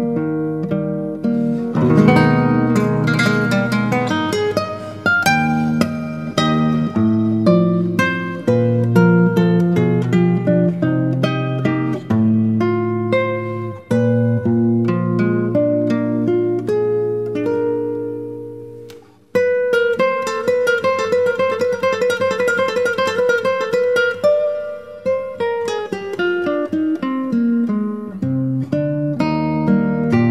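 Solo nylon-string classical guitar played fingerstyle, a classical piece arranged for guitar. The playing dies away briefly just past halfway, then resumes with a passage of fast repeated notes.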